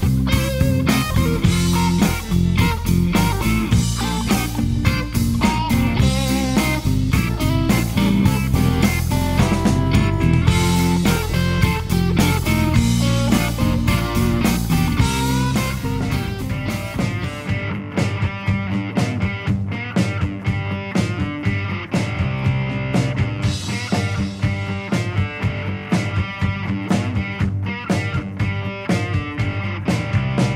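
Recorded blues-rock music led by electric guitar, with drums. About seventeen seconds in the sound thins out, losing its deepest bass and highest treble.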